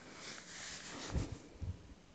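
Hands working over a plastic tray: a soft rustle, then two dull low thumps, one about a second in and one near the end.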